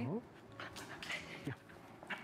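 Small terrier giving a short falling whine about one and a half seconds in, with breathy noise before it, as it jumps up at a hand held out with a treat.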